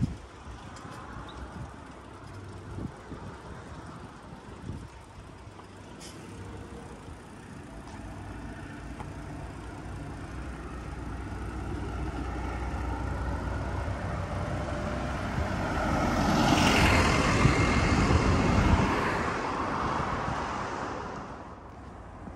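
A motor vehicle passing through a road tunnel: its engine and tyre noise swells slowly, is loudest about three-quarters of the way in, then dies away.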